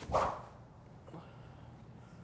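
A single fast whoosh of a SuperSpeed light overspeed training stick swung hard through the air, near the start, at about 120 miles an hour.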